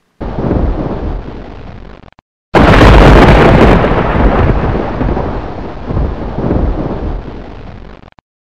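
Thunder sound effect: a first rumble that fades away within two seconds, then a louder sharp crack about two and a half seconds in that rolls on and slowly dies down.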